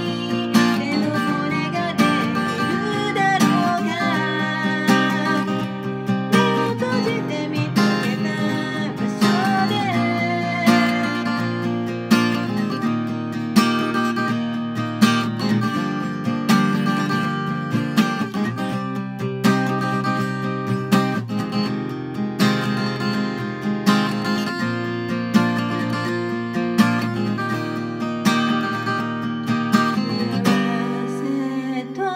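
Steel-string cutaway acoustic guitar strummed in a steady, driving pattern of full chords, with a strong accented stroke about every second and a third.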